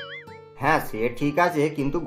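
A short wavering, wobbling synthetic tone, a cartoon sound effect, fades out about half a second in. Then a voice speaks dubbed dialogue.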